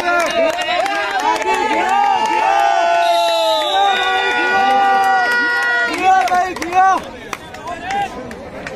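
A man's voice chanting a quick, repeated rising-and-falling call, typical of a kabaddi raider's continuous 'kabaddi, kabaddi' chant during a raid. The call stretches into longer held notes in the middle. Crowd noise and scattered claps sit underneath.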